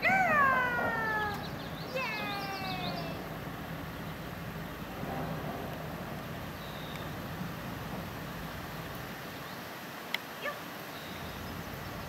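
Two high-pitched, drawn-out calls to a dog: the first rises and then slides down, and the second follows about two seconds later, sliding down. After them only a steady faint background remains, with two small clicks near the end.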